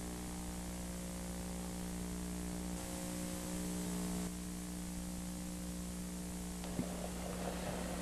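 Steady electrical mains hum, a stack of even tones, under a constant hiss. A faint rise in noise and a single click come about seven seconds in.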